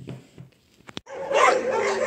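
Dogs in shelter pens barking and whining. They start suddenly about a second in, just after a short click.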